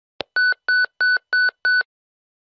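Electronic beep sound effect on an animated logo intro: a single click, then five short identical beeps, evenly spaced at about three a second.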